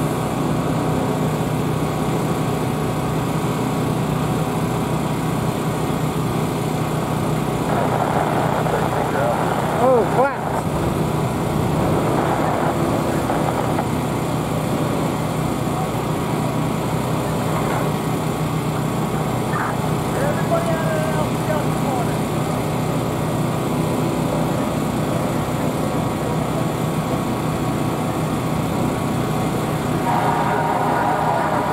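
Steady drone of fire engines running at the scene, with indistinct voices for a few seconds from about eight seconds in, briefly loudest around ten seconds.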